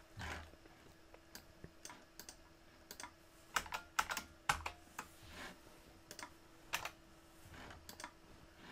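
Computer keyboard keystrokes, faint and irregular, a few clicks at a time, over a faint steady hum.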